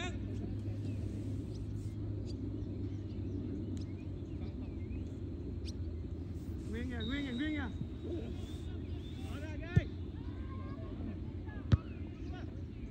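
Distant players calling out across a soccer field over a steady low rumble, with two sharp thuds about two seconds apart near the end: a soccer ball being kicked.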